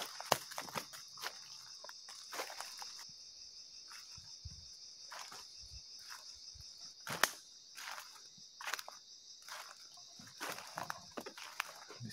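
Footsteps of a person walking through jungle undergrowth, an irregular series of steps with a louder one about seven seconds in. A steady high-pitched insect drone runs behind them.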